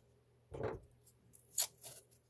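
Masking tape being torn and handled: a soft rustle about half a second in, then a few short crackly rasps near the end.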